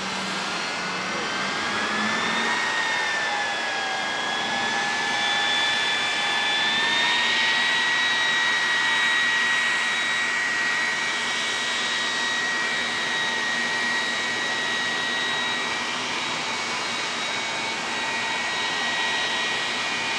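Drag-racing jet car's jet engine running with a steady rushing hiss and a high whine. The whine climbs in pitch over the first few seconds, dips, rises again about seven seconds in, then holds steady.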